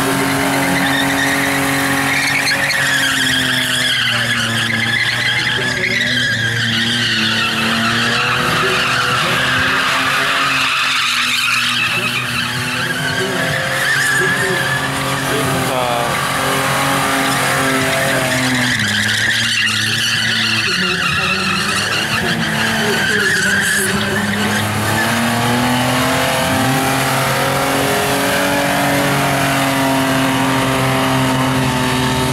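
Holden VS Calais engine held at high revs during a burnout, with the rear tyres spinning and squealing against the pavement. The revs sag and climb back twice, around the middle and about two-thirds through.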